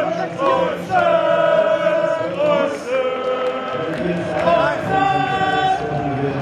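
A crowd of football supporters singing a chant together, holding long notes of about a second each with short slides between them.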